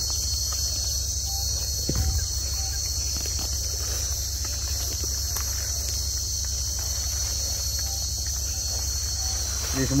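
Steady high-pitched insect chorus buzzing without a break over a low steady rumble, with a soft knock about two seconds in.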